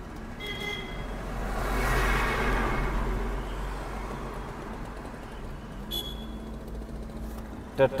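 Steady low rumble of a moving car heard from inside its cabin. A large truck passes close by, its noise swelling and then fading over about three seconds. Two brief high tones sound, one near the start and one about six seconds in.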